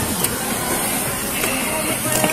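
A steady hiss of background noise picked up by a body-worn camera's microphone, with faint voices underneath.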